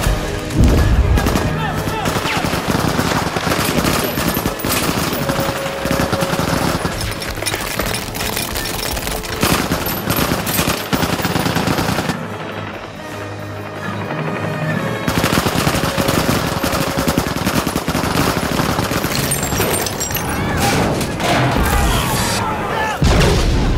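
Sustained automatic-weapon fire, a dense rapid rattle of shots, in a film sound mix over the orchestral score. The firing eases briefly about halfway through, then picks up again.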